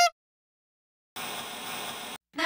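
The tail of a dog's bark at the very start, then about a second of silence, then a steady hiss of television static that begins a little over a second in.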